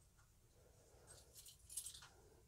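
Near silence, then a few faint, light metallic clicks in the last second as a folding pocket knife's open blade is tilted and moved in its pivot.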